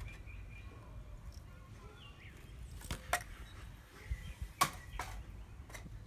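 Outdoor background with a low rumble, a few faint high chirps, and several sharp clicks and knocks, the loudest about four and a half seconds in.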